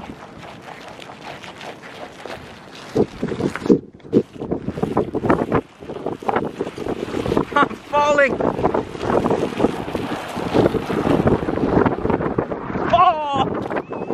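Footsteps crunching and scraping on ice-crusted snow, irregular and slipping, with wind on the microphone. The crunching grows louder and denser from about 8 seconds in.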